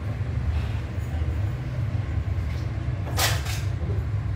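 A steady low rumble of background noise, with a brief rushing hiss a little after three seconds in.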